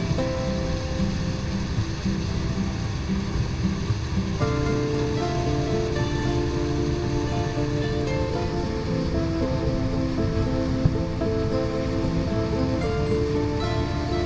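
Background music of held, sustained notes that shift to a fuller chord about four and a half seconds in, laid over a steady low rush of sea noise.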